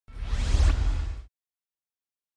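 A whoosh sound effect for a logo reveal, with a deep rumble under a rising sweep, lasting just over a second before it cuts off sharply.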